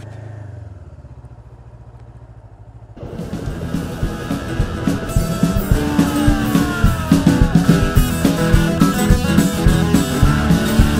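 A motorcycle engine running low and steady at walking pace for about three seconds, then cut off suddenly by loud rock music with electric guitar and drums.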